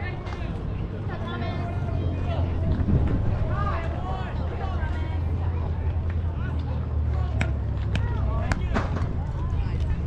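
Voices of players and spectators calling out across a baseball field over a steady low rumble, with a few sharp clicks a second or so apart about seven to nine seconds in.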